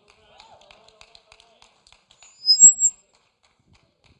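Faint scattered ticks, then about two and a half seconds in one brief, sharp tap with a short high-pitched ring.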